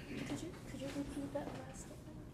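A faint voice far from the microphone, in short broken phrases, over quiet room tone.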